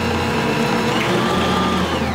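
Bosch stand mixer's motor running steadily, its beater turning through a thick batch of cookie dough.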